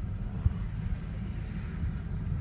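Low, steady road and engine rumble heard from inside a moving car, with a single thump about half a second in.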